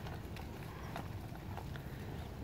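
Horses walking on soft arena dirt: faint, irregular hoofbeats with light clicks over a low steady rumble.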